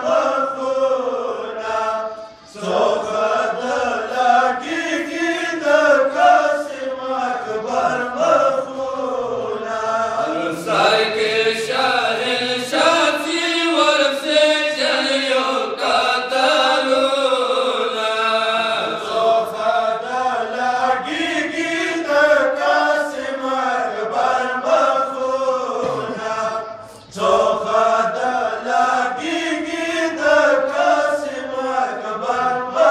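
A group of men reciting a Pashto noha (Shia mourning lament) in unison, unaccompanied and amplified through microphones, in a slow chant-like melody. The recitation breaks off briefly twice between lines, a few seconds in and near the end.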